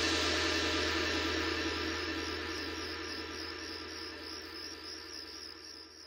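A sustained electronic drone from a bass-music mix intro: a steady low hum under a buzzing, hissing upper layer, fading out gradually over several seconds.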